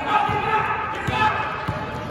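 A basketball being dribbled on a gym floor: a few bounces about a second in and after, with voices calling out in the gym.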